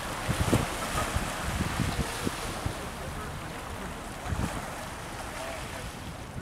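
Wind buffeting the microphone in uneven low gusts, heaviest in the first two seconds and again briefly near the end, over a steady wash of wind and water.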